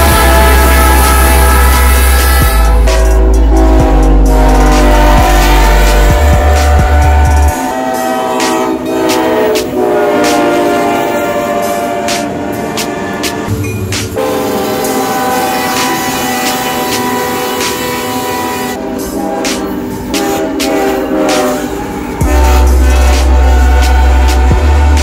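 Diesel locomotive air horns sounding in a string of held chords, with the rumble and rail clatter of passing trains, over background music with a heavy bass line that drops out about seven seconds in and returns near the end.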